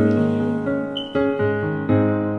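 Instrumental backing music of a slow ballad: sustained keyboard chords, with a new chord struck about a second in and another near the end.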